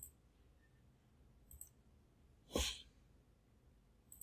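A single short breath or sniff close to the microphone about two and a half seconds in, the loudest thing in an otherwise quiet stretch, with a couple of faint clicks before it.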